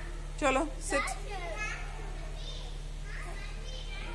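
A small child's voice: two short high-pitched vocal sounds about half a second and one second in, then fainter babble, over a steady low hum.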